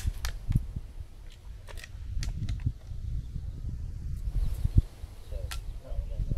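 Wind rumbling on the microphone outdoors, with a handful of sharp clicks and taps scattered through it.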